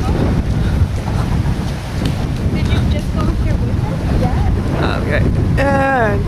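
Wind buffeting the microphone as a steady low rumble, with a short high-pitched call near the end.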